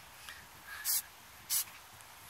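Aerosol spray paint can hissing in two short bursts, about a second in and again half a second later.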